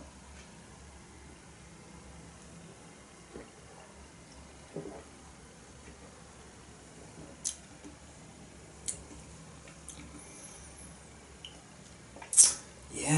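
A man sipping and swallowing beer from a glass, giving faint wet mouth sounds and a few short clicks, the sharpest two in the second half, as he tastes it, with a low steady hum underneath.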